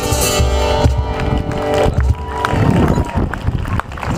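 Live acoustic guitar ringing out on the final chords of a song, stopping about halfway through. Scattered hand claps and voices follow.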